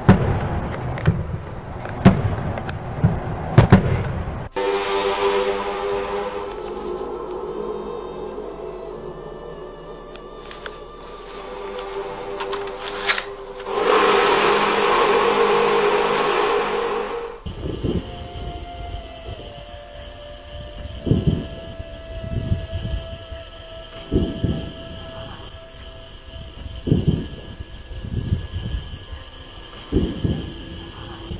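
A few sharp knocks, then a long horn-like drone of several steady tones that swells near the middle and cuts off abruptly. After it comes a fainter steady tone with a low thump every few seconds.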